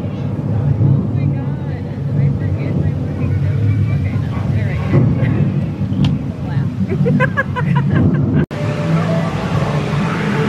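Themed-restaurant din: background crowd chatter over a loud, steady low rumble, with a few short high calls near the end. The sound breaks off for an instant about eight and a half seconds in.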